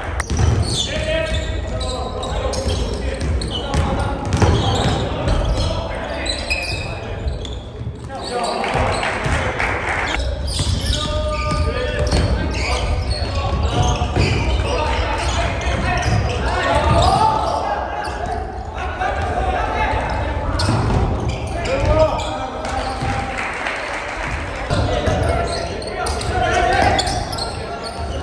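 Live basketball game sounds in a gymnasium: a basketball bouncing on the hardwood floor, with players calling and shouting on court.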